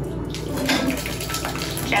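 Hot curds and whey poured from a saucepan into a cheesecloth-lined strainer: liquid splashing and trickling through the cloth into the bowl below, picking up about a third of a second in.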